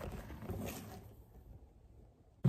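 Faint handling noise as a plastic bottle and the phone are moved close together, fading away to near silence.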